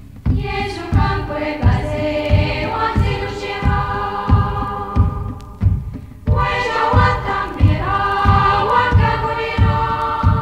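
Choir of missionary sisters singing a hymn in harmony over a steady low drum beat of about two strokes a second. The singing comes in two long phrases, with a brief break about six seconds in.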